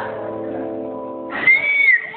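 A live band's last chord held and ringing steadily, cut off about a second and a quarter in. A loud, high whoop follows, a voice rising and then dipping slightly.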